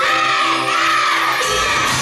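A group of young girls' voices shouting and cheering together over pop music as the cheerleaders throw their pom-poms up. The music changes about a second and a half in.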